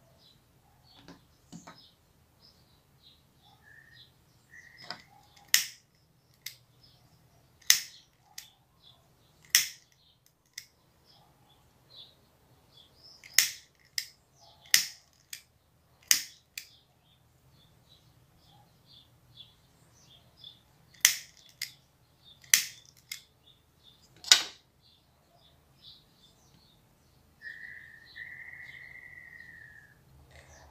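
Sharp, irregular clicks of a lighter being struck again and again while marking the fold points on organza ribbon, about a dozen loud ones, with faint bird chirps behind. A steady whistle-like tone lasts about two seconds near the end.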